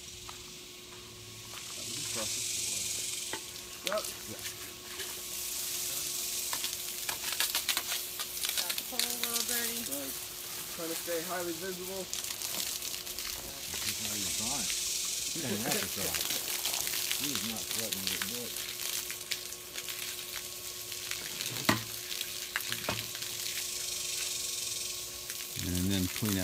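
Garden hose spraying water, washing debris out of a pool filter trap: a steady hiss of spray and splashing that comes up about two seconds in.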